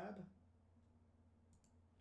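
A few faint computer mouse clicks, mostly about a second and a half in, over near silence with a low steady hum.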